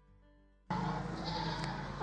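Near silence, then about two-thirds of a second in the background noise of the recording location cuts in suddenly and runs on steadily.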